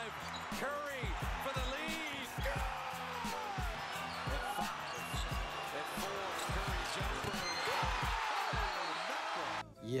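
NBA game broadcast audio: a basketball being dribbled on a hardwood court with repeated short low thuds, sneakers squeaking, and a steady arena crowd, over background music. It cuts off abruptly near the end.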